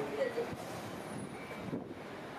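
Hankai Tramway 1001-series Sakai Tram low-floor streetcar moving at the stop, heard at a distance through steady street noise.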